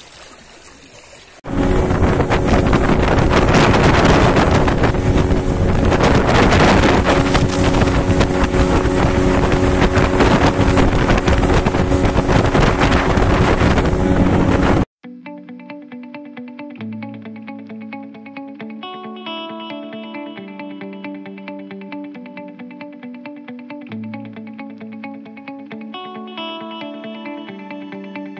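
A boat's motor running at speed under loud wind and water noise, even and unbroken, which cuts off suddenly about halfway through. Calm background music with slowly changing notes follows.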